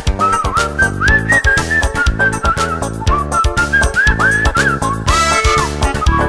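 Instrumental break in a Russian chanson song: a whistled melody, sliding between notes, over acoustic guitar, accordion and bass with a steady beat.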